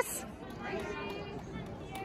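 Spectators' chatter in a large hall, a low steady murmur with a few faint distant voices.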